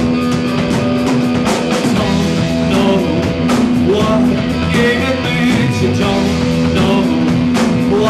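A rock band playing live, with electric guitar and drums, and a man's singing voice coming in about three seconds in.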